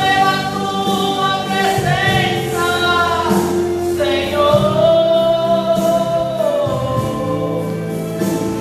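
Gospel hymn sung through a microphone, a voice holding long, slowly bending notes over a steady instrumental accompaniment.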